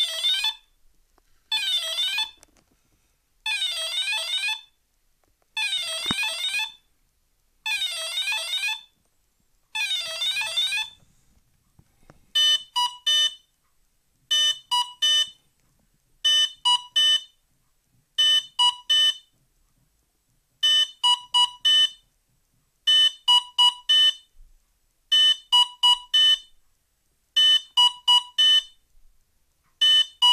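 Programming-mode tones from an ENERG Pro 40A brushless ESC, sounded through the brushless motor as the ESC cycles its menu. First comes a one-second sequence of tones sweeping up and down, repeated about every two seconds; this marks the soft-acceleration startup setting. From about twelve seconds in, groups of four short beeps repeat about every two seconds; these mark the governor-mode setting.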